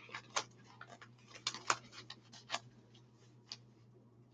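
Faint, irregular light clicks and crinkles from a Caron Cupcakes yarn cake and its paper label being turned over in the hands.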